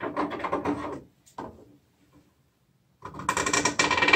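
Scissors cutting stiff 10-mesh interlock needlepoint canvas: a crunching run of quick clicks as the blades snap through the threads, once in the first second and again, louder, near the end.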